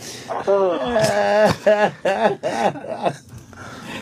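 A man laughing: a long laugh that breaks into a run of short, pitched bursts, dying away near the end.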